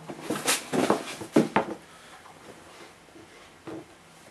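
Black tissue wrapping paper rustling and crinkling as sneakers are lifted out of a shoebox, with a few sharp crinkles in the first second and a half and a soft knock near the end.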